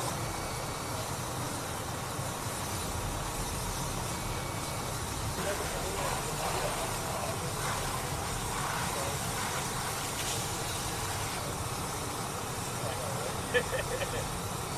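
Steady low rumble of vehicle engines running, with faint distant voices in the middle and a couple of sharp clicks near the end.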